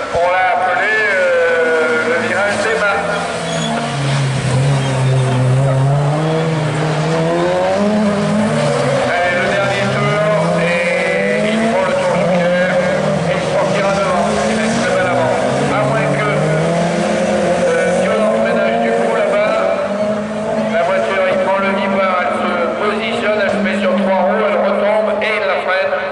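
Division 4 rallycross cars racing, their engines revving hard, the pitch climbing and dropping over and over through acceleration and gear changes.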